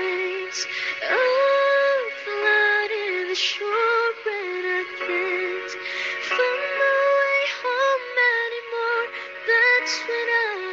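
Female vocalist singing a slow pop ballad live into a microphone, the voice gliding between sustained notes, with a long held note about a second in.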